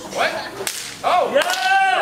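A sharp slap-like crack, then a spectator's high-pitched yell that rises, holds and falls.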